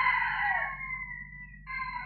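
A rooster crowing in the background, its long drawn-out call trailing off and fading about a second and a half in, over a low steady hum.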